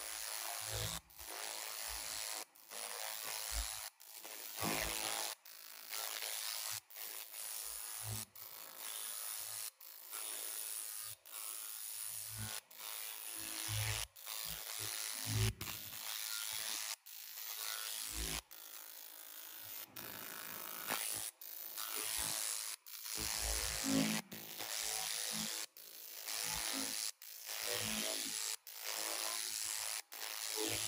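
A 300 W pulsed laser cleaning machine ablating the paint from an alloy car wheel spoke: a steady hiss broken by short gaps about once a second as the beam stops and starts.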